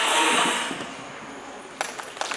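A dance song fades out over about the first second. Near the end, scattered audience clapping begins.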